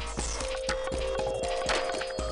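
Intro music: a held tone over a steady clicking beat of about four beats a second.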